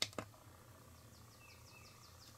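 A sharp click as the display-select push button on the solar charge controller is pressed, with a smaller click just after. Then a quiet room with a few faint, short, high chirps.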